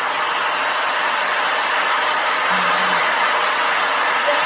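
A steady rushing noise, even and unbroken, with a brief low hum a little past the middle.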